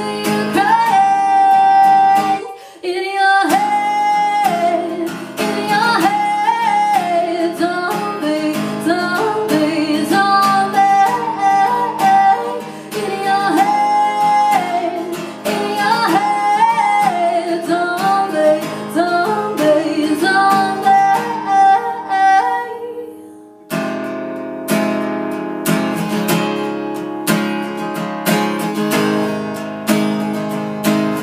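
A woman singing with a strummed acoustic guitar, her voice holding long notes. The voice stops about 24 seconds in, leaving the guitar strumming alone.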